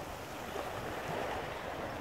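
Steady rushing outdoor noise of wind, with no distinct events.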